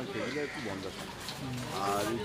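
A man speaking, with a long drawn-out syllable about three-quarters of the way through.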